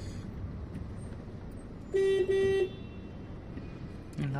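Car horn sounding twice in quick succession about two seconds in, the second toot a little longer, over the steady low rumble of a car moving slowly, heard from inside the cabin.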